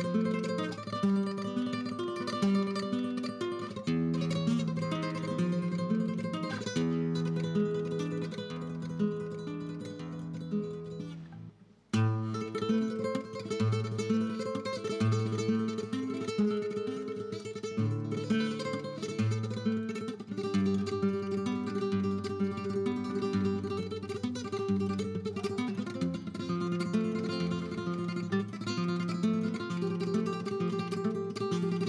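Solo flamenco guitar playing the opening for malagueñas, in notes and chords. About twelve seconds in it fades almost to nothing, then comes back in with a loud chord and plays on.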